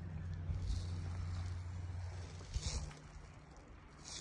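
Kayak paddle strokes: soft water splashes twice, over a low steady rumble that fades after about two and a half seconds.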